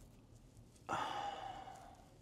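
A man's sigh: a breathy exhale that starts suddenly about a second in and fades away.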